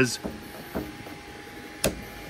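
One finger pluck of the Elegoo Neptune 4 Max's rubber timing belt near the end, a sharp short snap. The belt is plucked to judge its tension by the thump it gives.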